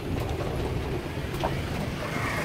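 Pickup truck driving along, heard from its open back: a steady low engine hum with road and wind noise.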